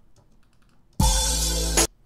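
A short snippet of a hip-hop beat's audio played back from a music production program, starting about a second in and cut off abruptly after under a second. Faint clicks are heard before it.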